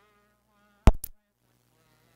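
Faint singing, cut about a second in by a sudden loud crackling pop, two or three cracks in quick succession lasting about a quarter second, like a microphone bump or audio glitch on the feed.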